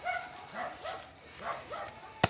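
A dog giving short, repeated whimpering yips, about one every half second.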